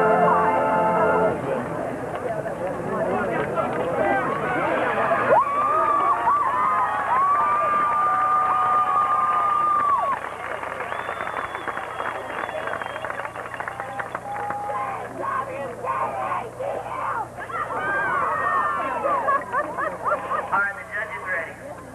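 A marching band's held chord cuts off about a second in, leaving the crowd's chatter and voices in the stands. A couple of steady held tones sound in the middle stretch.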